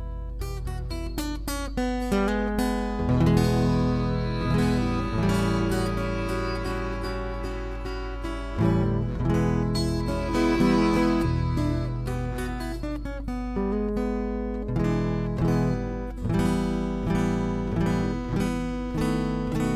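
Blues played on a strummed acoustic guitar, with a cupped-hand harmonica playing held notes over it from a few seconds in until past the middle.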